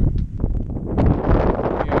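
Wind buffeting the microphone: a loud, rough rush of noise that swells about a second in.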